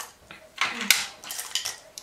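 Small makeup tools such as pencil sharpeners and tweezers clinking and rattling against a dish and a clear acrylic organizer as they are picked through and set in place: a quick run of light clicks from about half a second in.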